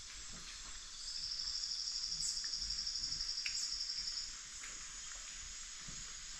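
Rainforest ambience: a steady high chorus of insects, joined from about a second in by a loud, rapid, high-pitched pulsing trill held at one pitch for about three seconds, with a few short chirps here and there.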